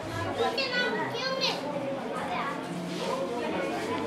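Children's voices chattering and calling out over one another, with a couple of high-pitched shouts about a second in.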